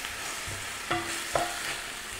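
Chopped tomatoes and onions sizzling in oil in a stainless steel skillet, stirred with a spatula that scrapes across the pan a few times over a steady frying hiss.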